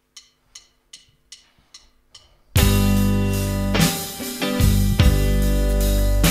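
A drum count-in of six quick ticks, about two and a half a second, then a live rock band comes in together about two and a half seconds in: electric guitars, bass and drum kit playing loudly.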